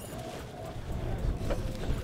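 Sportfishing boat's engine running with a steady low hum under wind and sea noise, with a single sharp click about one and a half seconds in.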